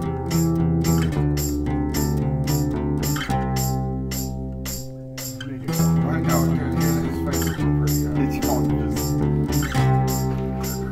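Instrumental rock music: guitar and bass under a steady percussion beat, the low end dropping out briefly about five seconds in.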